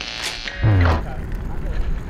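Wheeled suitcases rolling along a concrete path, a steady low rumble from their wheels.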